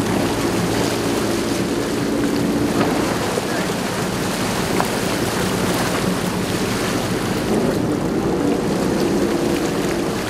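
A sportfishing boat's engines droning steadily, with water rushing and splashing along the hull.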